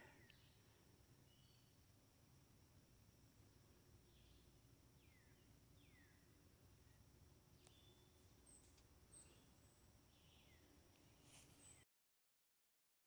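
Near silence: faint outdoor garden ambience with a few faint, short, falling bird chirps spread through the second half and a faint steady high tone, cutting off abruptly just before the end.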